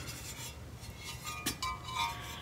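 A ceramic stork planter being picked up and handled, with a light rubbing sound and one sharp clink about a second and a half in.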